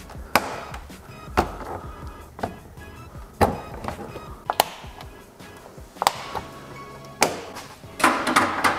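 Plastic push-pin clips on a Toyota 4Runner's under-hood cover panel clicking as their centers are pressed in and popped out with a pry tool: a series of sharp clicks about a second apart, over background music.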